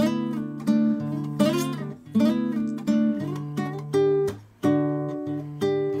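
Classical guitar played fingerstyle as a chord-melody solo: sustained bass notes under plucked chords and single melody notes, about one or two new chords a second.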